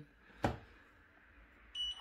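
Sharp ES-HFH814AW3 washing machine's program dial turned: one sharp click about half a second in, then near the end a short high electronic beep from the control panel as it takes the new program setting.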